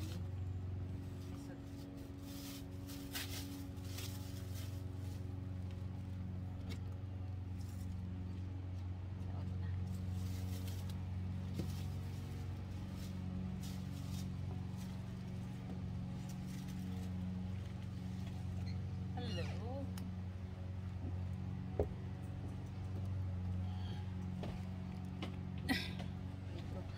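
A plastic bag rustling and crinkling as it is handled, heaviest in the first few seconds, over a steady low machine hum. Two short sharp knocks come near the end.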